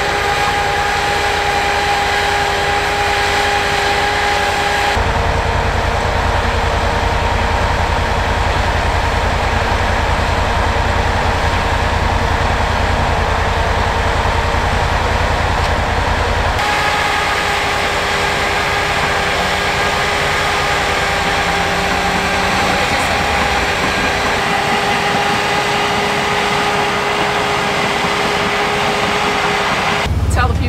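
Engine of a tracked drainage-tile plow running steadily, a continuous low rumble with a steady tone above it. The sound changes abruptly twice, about five seconds in and again past the halfway point.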